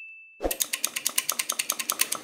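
A fading electronic ding tone, then about half a second in a fast run of mechanical ratcheting clicks, about a dozen a second, for about a second and a half, from an airsoft gearbox mechanism being worked by hand.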